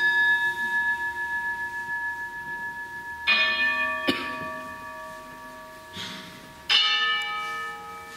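Altar bell struck three times at the elevation of the chalice during the consecration, the strokes about three and a half seconds apart, each ringing on in several steady tones that slowly fade.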